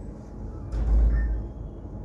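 A sudden dull thump with a short low rumble, a little under a second in, in a pause between spoken sentences.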